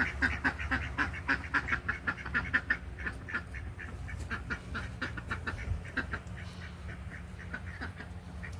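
Domestic ducks quacking in a rapid run of short calls, about four or five a second, thinning to scattered quacks after about three seconds.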